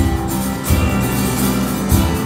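Live band starting a song's intro all at once: acoustic guitar strumming over drums and bass, with heavy beats about a second apart.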